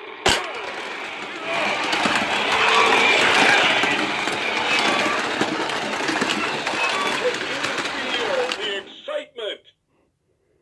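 A click as the start gate of a Shake N Go Speedway toy track is released. Then the battery-powered Shake N Go toy race cars run around the track with the playset's electronic racing sounds, loud and busy. The sound breaks up into a few short bursts near the end as the cars stop.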